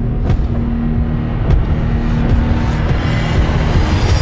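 Cinematic logo-sting music for a TV show bumper: a low sustained drone under a dense wash, with sharp hits about a second apart and whooshes, building to a louder rush near the end.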